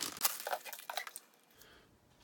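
Clear plastic packaging bag crinkling in the hand as it is pulled off a new tool: a few short crackles over about the first second.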